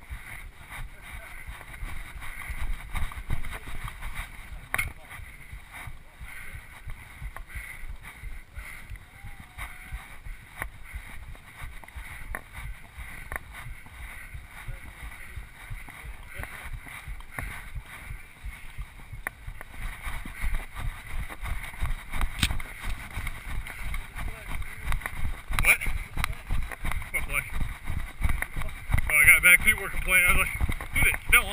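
Footsteps on a dirt road heard from a body-worn camera, with the camera jostling; the thuds grow quicker and heavier over the last ten seconds as the walk turns into a jog.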